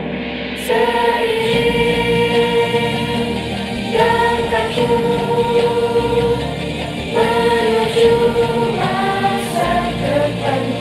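A choir singing a song in Indonesian in long held notes. New phrases begin about a second in, at four seconds and at seven seconds.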